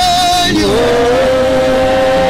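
Live gospel worship singing: a male lead singer holds long sustained notes into a microphone. From under a second in, a second voice holds a separate higher note alongside him.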